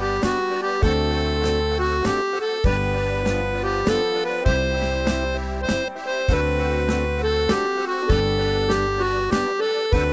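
Melodica playing a simple melody in held reed notes, over a backing track with a bass line and a steady beat.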